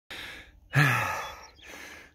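A man sighing: a short breath in, then, about three quarters of a second in, a voiced breath out that falls in pitch and fades.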